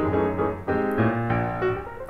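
Background music played on piano, a few notes and chords struck in turn and left to ring.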